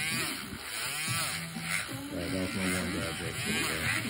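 Electric podiatry nail drill with a sanding band grinding down a thickened toenail, its whine rising and falling in pitch as it works the nail.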